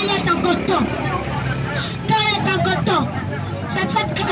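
A woman's voice preaching in French through a microphone and loudspeaker, over the babble of a market crowd and a steady low rumble.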